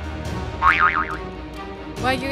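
Background music with a short comic sound effect about half a second in: a quick wobbling tone that swings up and down in pitch several times, louder than the music.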